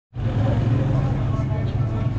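Street traffic noise with a steady low engine hum and some voices.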